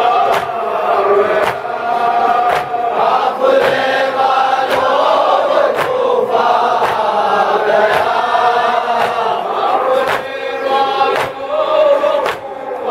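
A crowd of men chanting a noha (Muharram lament) together, with chest-beating (matam) slaps landing in unison about once a second.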